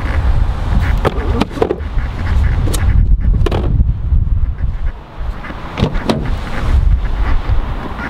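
Wind rumbling on a handheld camera's microphone, with a handful of sharp knocks and clicks from handling scattered through it.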